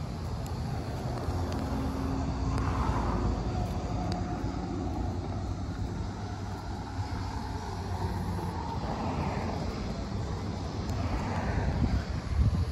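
Steady low rumble of a vehicle engine, with a haze of outdoor noise that swells a couple of seconds in and again near the end.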